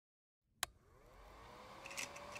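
A film projector's switch clicks on about half a second in, and its motor spins up: a whine rising in pitch that settles into a steady hum.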